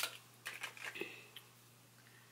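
Light clicks and taps of small single eyeshadow pans being handled: one sharper click at the start, then a few softer ones over the next second and a half.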